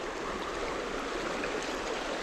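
A shallow, stony stream running steadily over broken water: an even rush of water with no other events.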